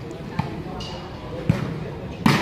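A volleyball being struck by hand twice during a rally, two short sharp slaps about a second apart, over the steady chatter of spectators.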